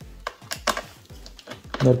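Several sharp clicks of a screwdriver against the screws and metal bottom cover of a laptop as the cover screws are being undone, most of them in the first second.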